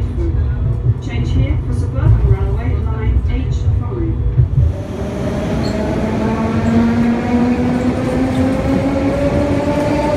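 For about the first five seconds, the low rolling rumble of a moving tram heard from inside, with people talking. Then an electric metro train speeds past a platform, its traction motors whining in a steady rising pitch as it accelerates.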